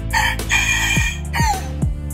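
Thai bantam rooster crowing once, a crow of about a second and a half that ends on a falling note, over background music with deep drum hits.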